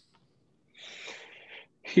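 A person drawing a breath into a microphone, a soft hiss lasting just under a second, just before speaking.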